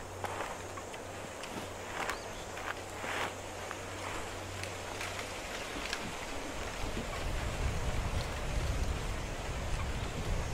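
Open-field ambience with a steady hiss and a few short, soft sounds in the first few seconds. From about seven seconds in, a low wind rumble builds on the microphone.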